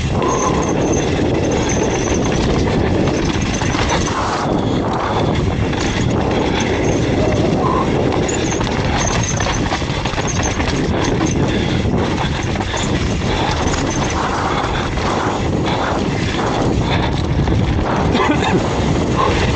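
Hardtail mountain bike riding fast down a dirt forest trail: continuous tyre rumble on the dirt with a constant rattle and many small knocks as the bike runs over roots and bumps.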